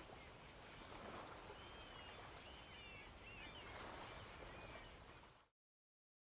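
Faint outdoor ambience: a steady high hiss with a few soft bird chirps, which cuts off abruptly into silence about five and a half seconds in.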